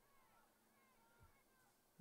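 Near silence: faint open-air field ambience with a few faint, short chirps that slide in pitch, and one soft thud about a second in.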